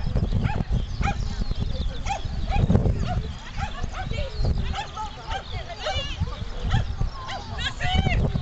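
A dog barking repeatedly in short yaps, over a constant low rumble.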